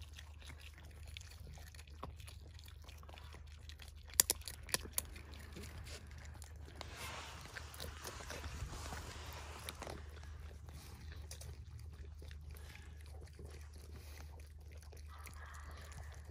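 Raccoons faintly chewing and crunching almonds, with a few sharp clicks about four to five seconds in, over a low steady rumble.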